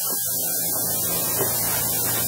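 Steady low electrical mains hum with a constant hiss on the recording.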